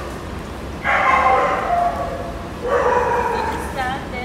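Golden retriever vocalizing in two drawn-out sounds, each about a second long, with a short wavering call near the end.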